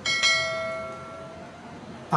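A single bell ding, struck once just after the start and ringing away over about a second and a half: the notification-bell sound effect of a subscribe-button animation.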